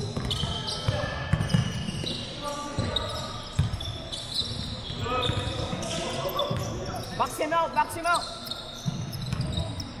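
Live indoor basketball play on a hardwood court: the ball bouncing in repeated dull knocks, sneakers squeaking, all echoing in a large hall. A player's shout comes about seven seconds in.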